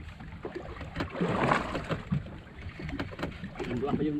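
Sea sounds aboard a small fishing boat: water washing against the hull under a low rumble, swelling a little between one and two seconds in.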